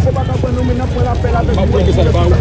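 People talking over the steady low rumble of an engine running.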